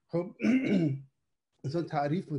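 A man's voice over a video call: a short vocal sound lasting about a second, a gap of dead silence, then speech resumes near the end.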